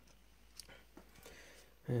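Quiet room tone with a few faint, short clicks, then a man's voice starting just at the end.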